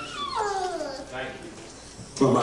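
A high-pitched voice through the church PA, sliding downward in one long falling wail, followed by a brief softer vocal sound.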